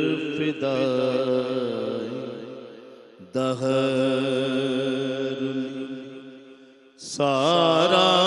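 A man singing a manqabat, a devotional verse in praise of Ali, into a microphone. He draws out long held notes in three phrases; each fades away before the next begins, about three and seven seconds in.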